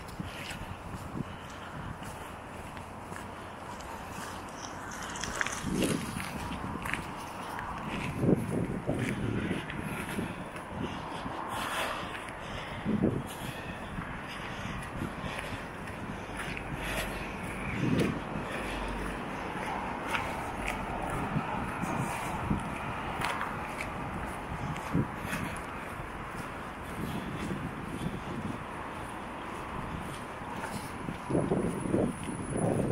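Footsteps walking along a wet asphalt path, with irregular soft steps and scrapes over steady outdoor background noise and a few louder low thuds.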